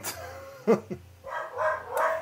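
A dog barking in the background, which its owner takes for a sign that someone is at the door.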